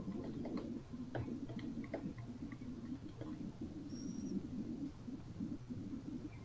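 Computer keyboard typing: scattered key clicks, thicker in the first half, over a steady low background hum, with a brief high-pitched tone about four seconds in.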